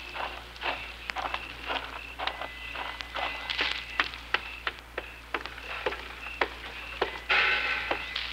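Radio-drama sound effects of footsteps walking at an even pace, about two to three steps a second, over a bed of chirping crickets. A louder, brief noise comes near the end.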